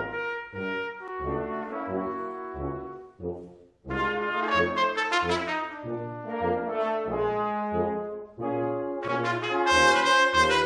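Brass quintet with a solo trumpet, backed by trumpet, French horn, trombone and tuba, playing a jazz piece. The music breaks off briefly about three and a half seconds in, then the ensemble comes back in and swells loudest near the end.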